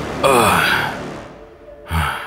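A man's pained groan or gasp, falling in pitch and fading out. A short low thump follows near the end.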